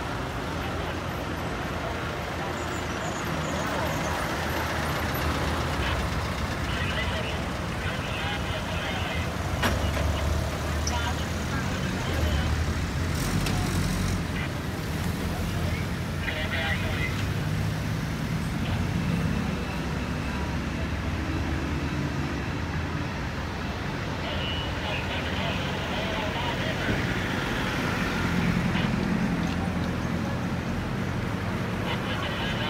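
A slow convoy of old military jeeps and a Land Rover driving past at low speed, their engine noise swelling and fading as each vehicle goes by. Voices of onlookers along the road are heard under it.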